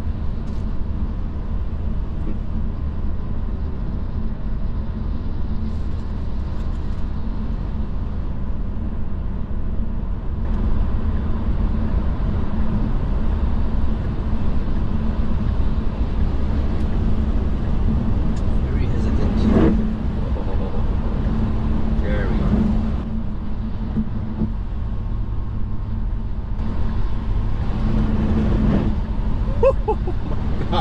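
Road and tyre noise heard inside a Tesla's cabin as it drives on a slushy, snow-covered highway. There is a steady low rumble with a hum and no engine note, and the hiss of tyres in slush grows louder about ten seconds in.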